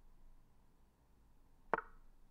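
A single short click of an online chess site's move sound, played once near the end as the opponent's knight lands on its square.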